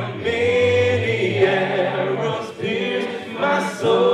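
A man singing lead into a microphone over an a cappella vocal group, voices only, with held low bass notes beneath sustained melody notes.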